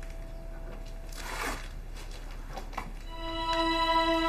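Background drama score of slow, held notes, string-like in tone, with a brief soft swish about a second in; a louder sustained chord comes in about three seconds in.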